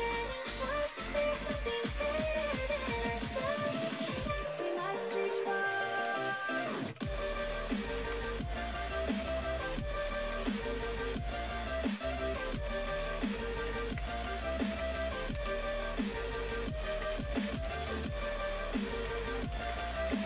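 Background music with a steady beat; the bass drops out for about three seconds a few seconds in, then comes back.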